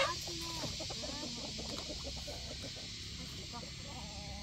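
Chickens clucking faintly: scattered short, arching calls over a steady background hiss.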